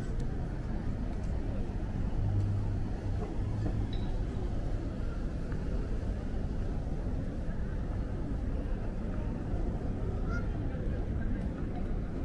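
Outdoor ambience of a busy open pedestrian plaza: a steady low rumble with faint distant voices.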